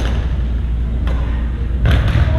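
Steady low rumble of gymnasium room noise during an indoor volleyball game, with three sharp knocks, the last echoing in the hall.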